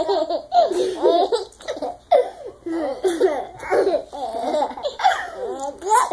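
A baby laughing, hard and over and over, in short bursts throughout.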